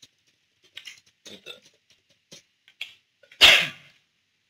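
Faint, scattered clicks of computer keyboard typing, then about three and a half seconds in a single short, loud throat noise from a person.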